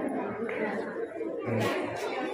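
Indistinct voices chattering, quieter than the speech around it, with a short hiss-like burst about a second and a half in.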